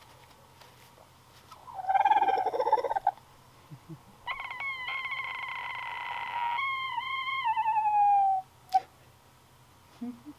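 Roosters crowing at close range: a short crow about a second and a half in, then a longer crow from about four seconds that holds a steady note and ends on a falling tail.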